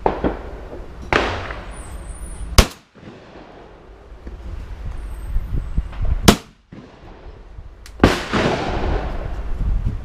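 Shotgun fired twice at clay targets: two sharp, close shots about four seconds apart, the first the loudest. Duller shots with longer, fading tails come about a second in and again near the end.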